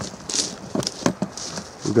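Camera handling noise as the camera is picked up and moved: a few irregular clicks and knocks with brief rustles.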